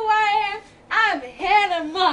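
A girl singing in three short phrases, the first a held note with a wavering pitch.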